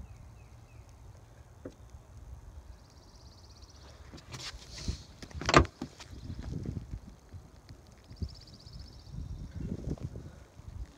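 Handling noise and a low rumble on a phone microphone, with rustling and one sharp knock about five and a half seconds in.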